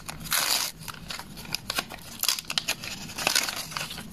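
Small handmade paper envelope being opened by hand, its paper rustling and crinkling as the paper stickers inside are drawn out. There is a louder rasp of paper about half a second in, then a run of small crinkles and taps.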